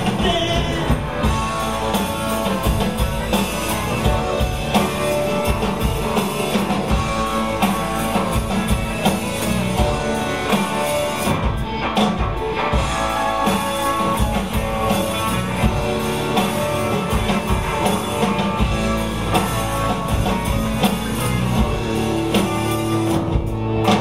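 Live rock band playing the song: strummed guitars over a steady drum beat, without a break.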